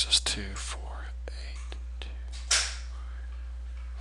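A low, half-voiced murmur right at the start and a breathy exhale about two and a half seconds in, over a steady low hum.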